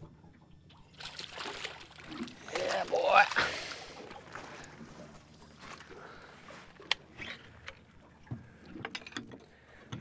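A snapper being scooped up in a landing net at the boat's side and lifted aboard: splashing, with water streaming off the net, loudest about three seconds in, followed by quieter handling sounds and one sharp knock near the end.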